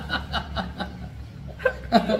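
Two men laughing together, a quick run of short laugh pulses that dies down about halfway through, with another burst near the end.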